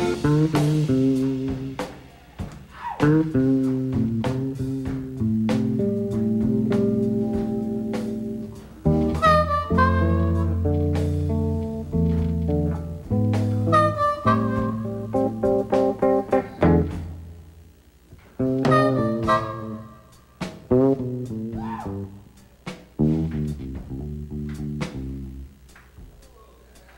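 Electric blues band playing an instrumental passage of a slow blues: guitar with bass guitar and drums, the melody notes bending up and down in pitch.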